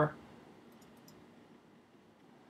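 Several faint, quick computer mouse clicks close together a little under a second in, over quiet room hiss.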